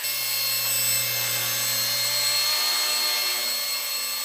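Micro electric RC Bell 222 Airwolf helicopter in flight, its small electric motors and rotors giving a steady high whine. A lower hum under it drops away about two-thirds of the way through.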